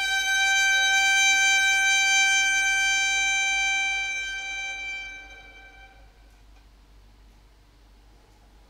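Violin holding one long bowed note, steady for about four seconds, then fading away to nothing about six seconds in: the final eight-beat note of the piece, taken down to silence.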